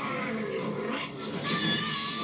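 Animated film soundtrack playing from a TV: a cartoon character's drawn-out, wavering yell over the scene's sound effects.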